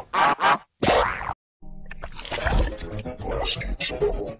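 Edited meme audio: three short, choppy bursts of processed voice and sound effects, a sudden drop to dead silence about a second and a half in, then a duller, muffled stretch of voices over music.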